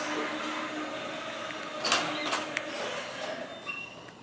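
A steady electric motor hum with a couple of light knocks about two seconds in, and a short high beep near the end.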